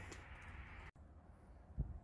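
Faint low background noise with no clear source, broken by a sudden brief dropout about a second in, and a soft low thump near the end.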